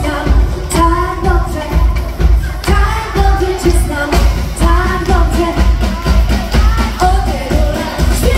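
Live pop song: a woman sings the lead through the PA over a loud backing track and live drums, with a steady heavy beat.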